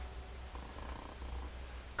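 Room tone: a low steady hum under a faint hiss, with no voice.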